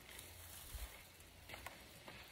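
Near silence: faint outdoor background hiss with a few soft clicks about one and a half seconds in.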